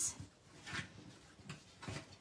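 Stiff cardstock box blank being folded and creased by hand along its score lines: a few faint papery rustles and creases, the first about a second in and two more near the end.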